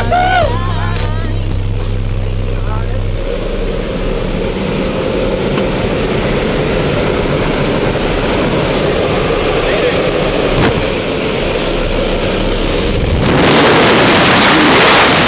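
Aircraft engine drone and wind noise inside a skydiving plane's cabin near the open door. About a second before the end, a much louder, steady rush of wind takes over as the jumper leaves the plane.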